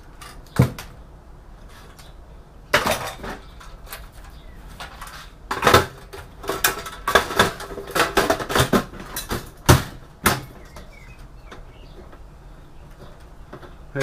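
Sheet-metal clanks and rattles from a steel desktop PC case being handled, with its side cover panel fitted back on: a run of sharp knocks, thickest between about three and ten seconds in, that stops shortly after.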